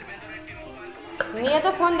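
A spoon clicking against a dish: two short sharp clinks a little after a second in, with a voice starting just after.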